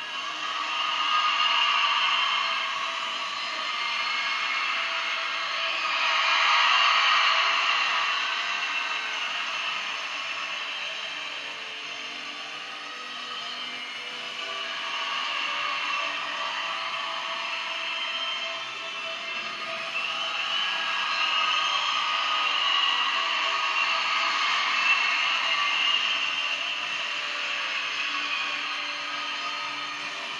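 Accompaniment music for a rhythmic gymnastics hoop routine, heard thin and without bass through a television broadcast, swelling and easing in waves.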